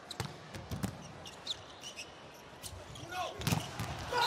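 Volleyball bounced on the hard court floor, a series of sharp knocks at uneven intervals, as a player gets ready to serve in a large hall.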